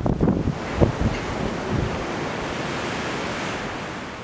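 Strong wind blowing across the microphone. Low, uneven buffeting in the first second or two settles into a steady rushing noise.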